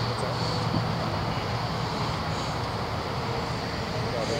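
Steady low engine hum under a constant outdoor noise.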